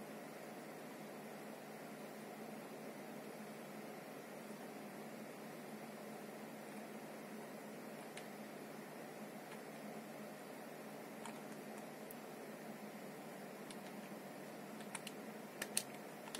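Faint steady hum of a running desktop PC's fans, with a few soft clicks here and there and a quick cluster of clicks near the end.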